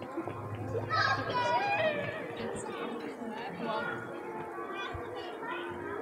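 A crowd of people chatting, children's voices among them, with music playing in the background.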